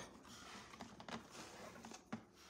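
Faint rustle of a two-strand nautical rope being pulled through a wire pencil holder, with a few light clicks.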